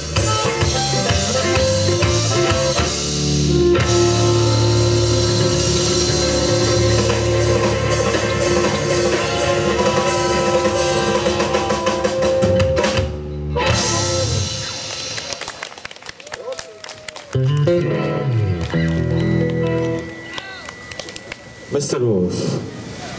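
Live blues band playing: harmonica over electric guitar and drum kit. The music stops abruptly about 13 seconds in, then comes back in short, patchier phrases and is quieter toward the end.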